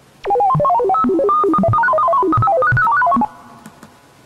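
A short electronic jingle of quick, leaping notes like a phone ringtone, lasting about three seconds and stopping abruptly. It serves as the magic sound as the spell takes effect.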